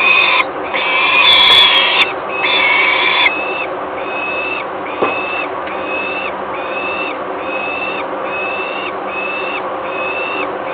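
Young peregrine falcons calling over and over with harsh, wailing begging calls. For the first three seconds the calls are loud and overlapping, as from more than one bird. After that they settle into an even series of about one and a half calls a second. A single faint click comes about five seconds in.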